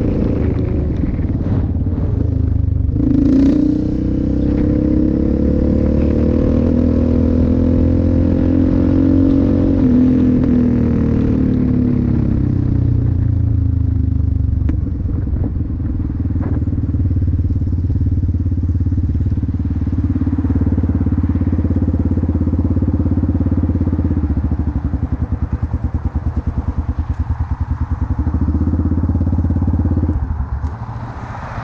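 Yamaha Raptor 700R ATV's single-cylinder four-stroke engine running under way. The revs climb about three seconds in, hold, then ease off between ten and fourteen seconds, and the engine runs at lower revs with an even pulsing near the end.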